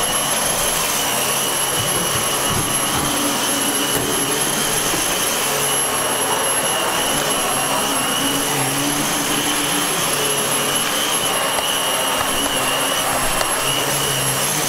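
Dyson DC15 The Ball upright vacuum cleaner running steadily with a high whine as it is pushed over carpet.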